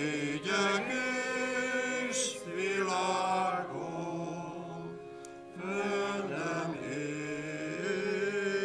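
Voices singing a slow hymn in long held notes with keyboard accompaniment, with a short gap between phrases about five seconds in.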